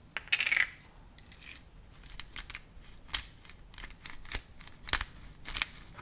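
Light kitchen handling sounds: a short crackly burst about half a second in, then a string of sharp, separate clicks and taps of hard objects on a counter.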